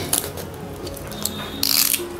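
Mechanical clicking at the start and a short, loud ratchet-like rasp near the end, over steady background music.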